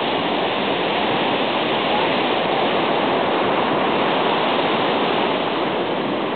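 Ocean surf, a steady even rush of breaking waves.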